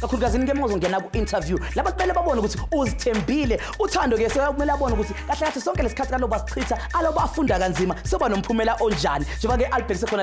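A man talking to camera over a hip hop backing beat with a steady bass line.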